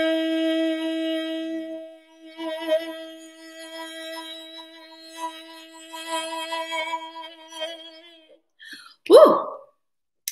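A woman's voice holding a long sung "hey" on one steady pitch, the sustained last note of a breath-support vocal exercise. About two seconds in it drops to a quieter, wavering tone that trails off about eight seconds in, cut short as she runs out of breath. A brief sharp sound follows near the end.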